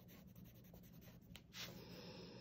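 Faint scratching of a colored pencil shading on paper in quick back-and-forth strokes.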